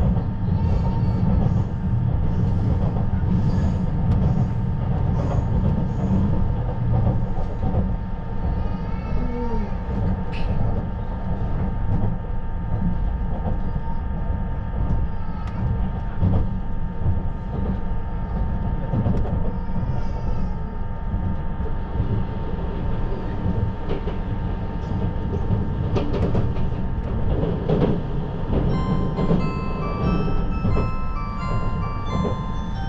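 Inside the cabin of a 651 series electric limited express while it runs: a steady low rumble of wheels on rail with occasional sharp clicks. A short electronic chime melody starts near the end.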